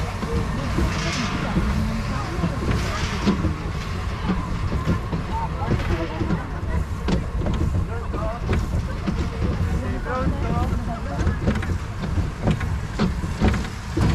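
Roller coaster train running along its track: a steady rumble with frequent short clicks and clatters from the wheels.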